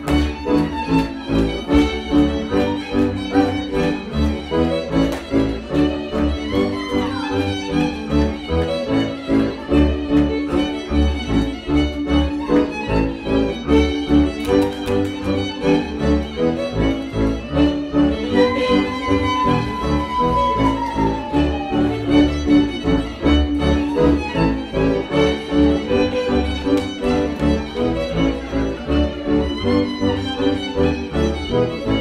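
Live Polish highland (góral) folk band: fiddles playing a lively dance tune over a bowed bass that keeps a steady pulsing beat. Just after the middle, one fiddle holds a long high note and then slides down.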